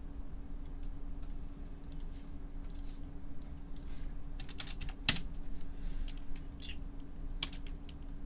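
Typing on a computer keyboard: scattered key clicks, with a few louder strikes past the middle, over a steady low hum.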